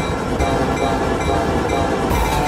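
Union Pacific diesel freight locomotives passing on the track: a steady low rumble with sustained tones over it.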